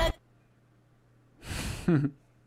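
The music breaks off suddenly, leaving near silence. About a second and a half in, a man sighs into a close headset microphone: a breathy exhale that ends in a short voiced sound falling in pitch.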